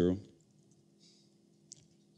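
A few faint keystrokes on a computer keyboard, with one sharper key click near the end.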